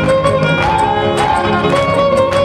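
Huapango music: a violin plays a moving melody over a steady, strummed rhythmic accompaniment.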